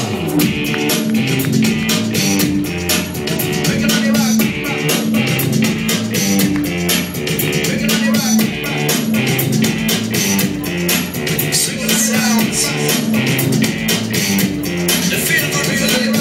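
Loud runway music: a rock-style track with a steady driving beat and a repeating bass line, with no singing.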